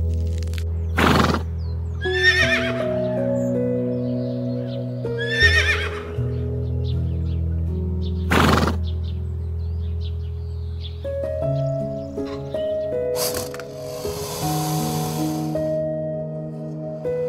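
Horse whinnying twice, trembling calls about two and a half and five and a half seconds in, with short breathy blasts around them, over soft background music. A hiss comes near the end.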